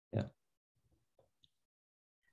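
A single short spoken "yeah" from a video-call participant, then near silence with a couple of faint, tiny sounds.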